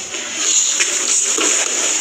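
Rustling of clothing and shuffling on a padded mat as a person is taken down and lands, with a few soft knocks, over a steady hiss.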